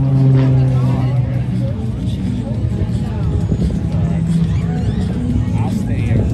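Single-engine propeller aerobatic plane's engine running under power as it pulls up into a vertical climb, heard over crowd chatter and music from the loudspeakers. There is a steady note for about the first second, after which the sound becomes busier.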